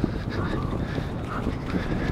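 Wind buffeting an outdoor microphone: a steady low rush.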